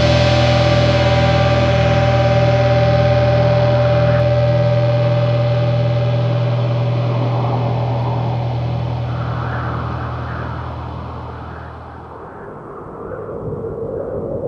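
A black metal song ends on a held, distorted guitar and bass chord that rings out and fades. The low notes stop about twelve seconds in. From about eight seconds, a rushing, whooshing noise swells in over it in uneven surges.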